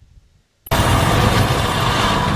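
Near silence, then under a second in a loud, steady, engine-like rumbling noise cuts in abruptly and holds.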